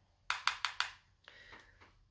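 A makeup brush tapped four times in quick succession against an eyeshadow palette, followed by a short, soft brushing scrape.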